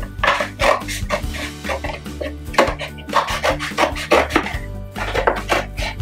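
Scissors cutting through a stiff paperboard rice milk carton: an irregular series of short snips, about two or three a second.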